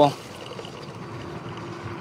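Steady rolling noise of a fat-tire electric bike riding along a sandy dirt trail, tyre and wind noise with no distinct motor whine, at a low, even level.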